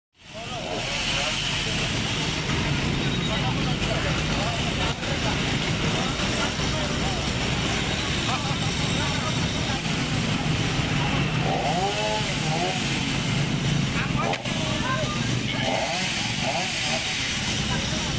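An engine running steadily, with indistinct voices of people talking over it.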